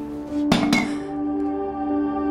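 Soft background music of held tones. About half a second in, two quick sharp clinks of tableware knocking together, a short ring after them.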